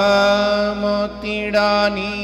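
A man's voice singing a Gujarati devotional kirtan, holding a long, nearly steady note, with a reedy harmonium-like accompaniment beneath.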